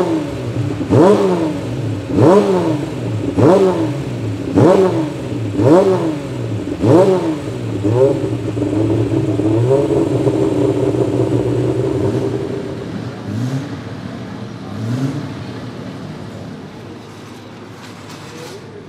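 BMW 3.0 CSL Group 2 race car's 3.2-litre straight-six being blipped on the throttle during warm-up: about eight sharp revs, roughly one a second, rising and falling. It is then held at a steady raised rev for about four seconds and drops back with two smaller blips to a quieter, lower running.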